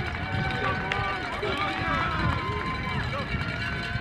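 Several young men's voices talking and calling out over one another in a team huddle, with no single voice standing out.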